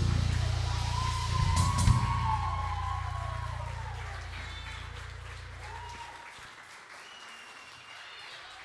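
A live band's final low note rings and fades, stopping about six seconds in, while an audience applauds. The applause dies away gradually.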